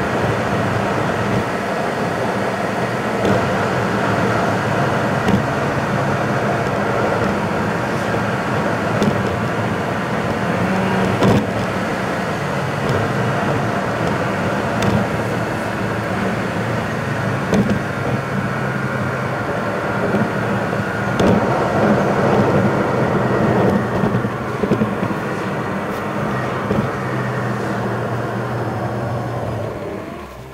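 Car engine and tyre noise heard from inside the cabin while driving at a steady cruise, with a low steady drone and occasional small rattles. It quietens at the very end as the car slows.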